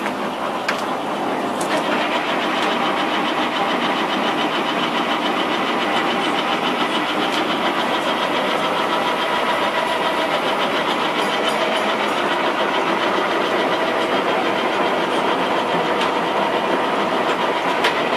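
Lodge & Shipley 60-inch big-bore chucking lathe running with its faceplate spinning: a steady mechanical drive and gear whir with a fine, fast ripple. It gets a little louder about two seconds in.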